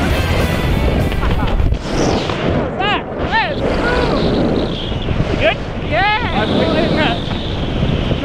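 Wind rushing over the camera microphone during a tandem parachute descent under an open canopy, with short, excited voice calls that rise and fall in pitch a few times; background music also in the mix.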